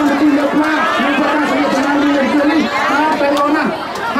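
A voice speaking loudly and without pause over the chatter of a crowd.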